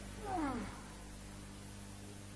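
A soft, animal-like cry, about half a second long, falling steeply in pitch, from the woman lying on the floor whom the film presents as turned into a cow.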